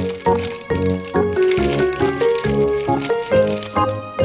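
Background music with a bouncy melody over bass notes, together with the crinkle of a clear plastic bag being handled and pulled open.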